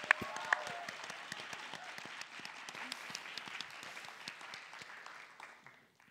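Audience applauding, dense clapping that gradually fades away over about five seconds.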